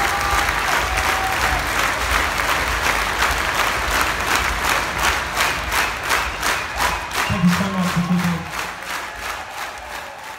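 Large crowd applauding and cheering. About halfway through, the clapping falls into a steady unison rhythm of roughly three claps a second, and a voice calls out briefly a little later.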